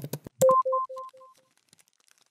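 Outro sound effect: a rapid run of clicks, then about half a second in a single electronic beep that echoes several times and fades out within about a second.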